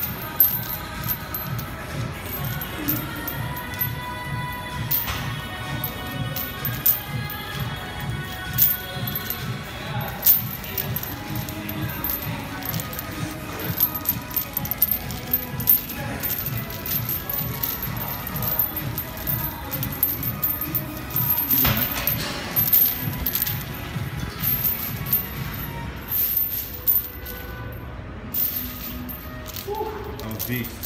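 Heavy steel chains worn around the neck clinking and rattling as they shift with each movement, over music with a steady beat.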